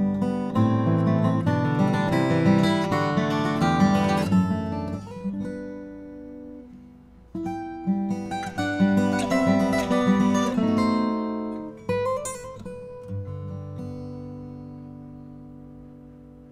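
Furch Yellow Deluxe Gc SR steel-string acoustic guitar, a grand auditorium cutaway with Sitka spruce top and Indian rosewood back and sides, played fingerstyle. Two phrases of chords and melody, each left to ring and decay, with a final chord about three seconds from the end that fades away.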